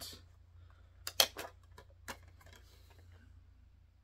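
A few short plastic clicks from a DVD case being opened and its disc handled, a cluster of them about a second in with one more shortly after, over quiet room tone.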